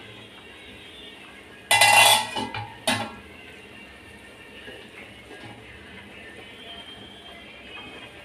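Metal cookware clanks twice, about two and three seconds in, the first ringing for about half a second, as the steel kadai is uncovered. Beneath, a faint steady bubbling of water at a full boil with chicken drumsticks in it.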